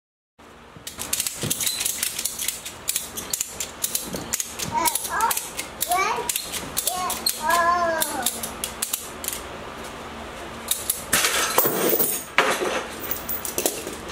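Ratchet strap being worked to hoist a heavy atlas stone on a chain: a run of fine ratcheting clicks, with a short voiced sound in the middle. Near the end comes a louder rush of noise as the strap and chain jerk loose.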